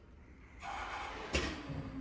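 Inside a Tokyo Metro 13000 series subway car: a rush of air hiss sets in about half a second in, then a sharp clunk near the middle, followed by a faint steady hum.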